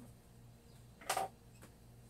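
Faint room tone with one short hiss about a second in.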